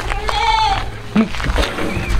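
A goat bleats once, a single wavering call of under a second near the start.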